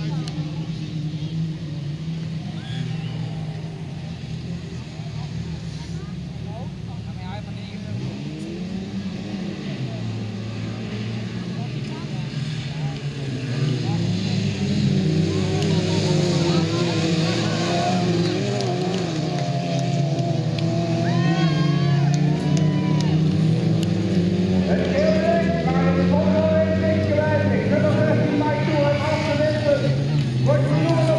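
Engines of several autocross race cars running on a dirt track, revving up and down against each other. They grow louder about halfway through.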